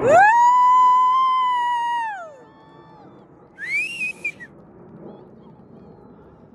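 A person whistling loudly: one long whistle that swoops up, holds a steady pitch for about two seconds and drops away, then a second, shorter and quieter whistle that rises and holds briefly about three and a half seconds in.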